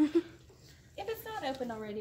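A person's voice talking in the second half, after a short pause.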